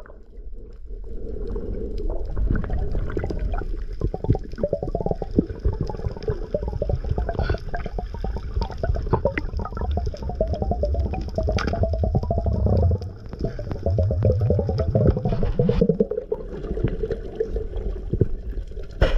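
Muffled underwater sound through a camera housing: water rushing and gurgling, with dense crackling clicks over a low rumble.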